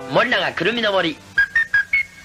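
A voice for about the first second, then four short high whistle notes in quick succession, the last one the highest and held.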